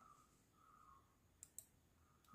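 Near silence, with two faint short clicks about a second and a half in.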